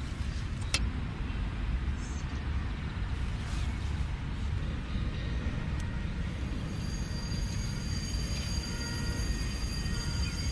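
Steady low outdoor rumble with a single click under a second in; from about two-thirds through, faint thin whistling tones set in as test pressure is let through the hose fitting into the gas holder's replacement safety valve.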